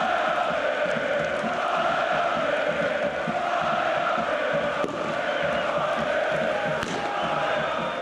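Large stadium crowd chanting in unison, a steady, dense wall of many voices.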